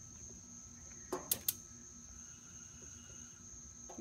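A gas grill's knob igniter clicks twice in quick succession a little over a second in. A steady high-pitched insect drone carries on underneath.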